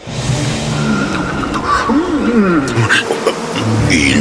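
A commercial's sound-effects track that starts abruptly: bees buzzing in a dense, noisy mix, with a short voice-like call about halfway through.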